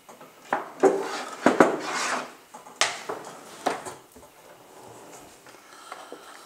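A cutting board and kitchen knife being handled on a kitchen worktop: about six sharp knocks and clatters in the first four seconds, with a brief scrape about two seconds in.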